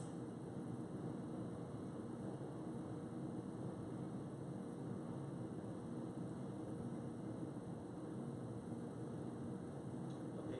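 Steady low hum and hiss of room tone, with no distinct events.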